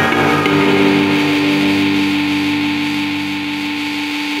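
Electric guitar playing metal: a chord struck about half a second in and left ringing, slowly fading.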